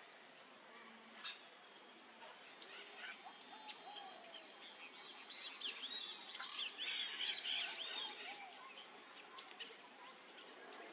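Wild birds calling, with a busy run of short, arching chirps from about five to eight seconds in. Sharp clicks are scattered through it, the loudest near the end.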